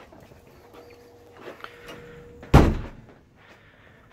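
A door shutting with a single thud about two and a half seconds in, over quiet room sound.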